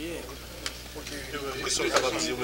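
Quiet, indistinct voices over a crackly, hissy background, with a single sharp click about two-thirds of a second in; louder speech starts near the end.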